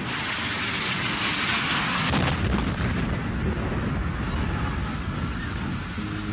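A jet airliner's engines roaring as it passes low overhead: a loud rush of noise that sets in suddenly and slowly fades.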